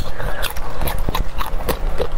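Close-miked chewing of a mouthful of food, a fast irregular run of crunchy, wet mouth clicks.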